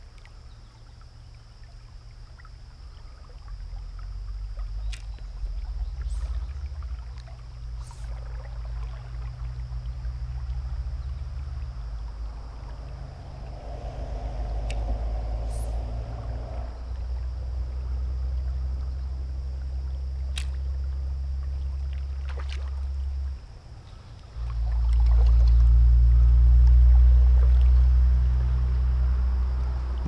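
Low, wavering rumble of wind buffeting an action-camera microphone, over faint river flow and a few light clicks. It swells much louder for the last few seconds.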